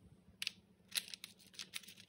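Parchment paper rustling in a few short, crisp crackles as skewered chocolate-dipped strawberries are handled and set on a paper-lined plate.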